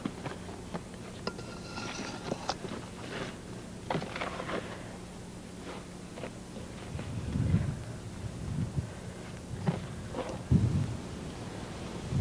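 Hands working a dry mix of seeds, compost and crumbled red clay in a plastic tub: gritty rustling and scraping with scattered crunches, and a few soft low thumps in the second half.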